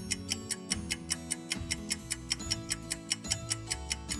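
Quiz countdown timer: clock-like ticking, about five ticks a second, over a steady backing music bed.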